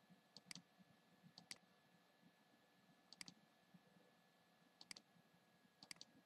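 Faint computer mouse clicks, five in all at irregular intervals of one to two seconds, each a quick press-and-release double click, over near-silent room tone.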